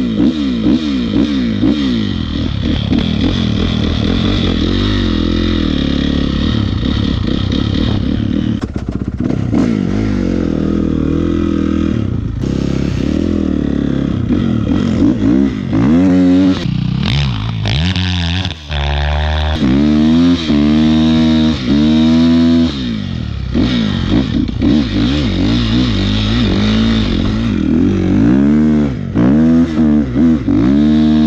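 Dirt bike engine running just after a cold start, held fairly steady at first and then revved up and down over and over from about halfway through as the bike rides through snow.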